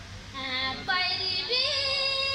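A woman singing a jatra geet, a Sarna devotional folk song, in a high solo voice. She comes in about a third of a second in and moves into long held notes in the second half.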